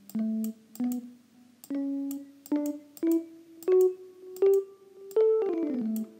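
GarageBand's Electric Piano instrument played one note at a time on an iPad touchscreen keyboard: about eight notes climbing step by step, then a quick run back down near the end.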